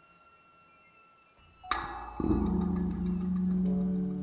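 Contemporary chamber music with a tape part. Quiet sustained tones give way about 1.7 s in to a sharp struck attack that rings on. Half a second later a loud, steady low cello note comes in, with a quick ticking texture above it.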